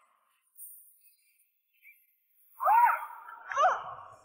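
Near silence, then two short high-pitched cries about a second apart, each rising and falling in pitch.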